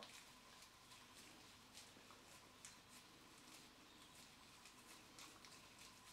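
Near silence, with a few faint scattered ticks and rubbing as a screwdriver is turned by hand through a scrap of latex glove on a small stripped screw.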